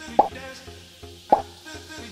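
Two short pop sound effects about a second apart, the kind used as caption boxes appear, over quiet background music.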